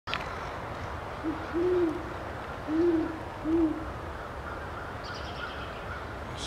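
Great horned owl hooting: a deep series of four hoots, a short one followed by three longer ones, starting about a second in and lasting about two and a half seconds.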